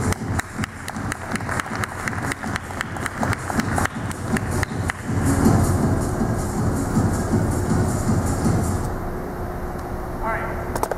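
Background music stops abruptly, followed by several seconds of scattered clapping from a small audience at the end of a staff kata. Music then plays again more quietly.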